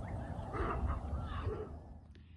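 A few short calls from quail, over a steady low rumble.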